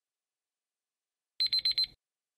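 Electronic alarm-clock beeping, four quick high beeps in about half a second near the end, signalling that the countdown timer has run out.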